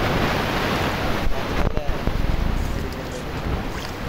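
Water churning and splashing as a dense shoal of tilapia and pangas thrashes at the pond surface, with wind rumbling on the microphone. The noise is loud and steady, easing a little near the end.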